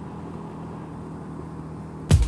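1985 Honda Rebel 250's parallel-twin engine running steadily under way, a low, even drone with wind on a helmet-mounted microphone.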